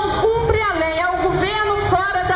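Protesters chanting in a sing-song melody, with one high voice standing out on held, sliding notes.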